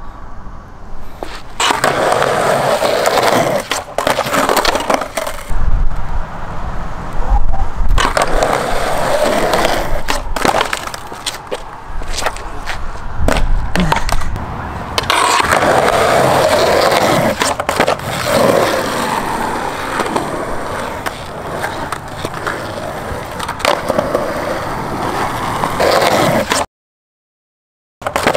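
Skateboard wheels rolling over rough concrete in long runs, broken by sharp clacks of the board's deck and tail striking the ground.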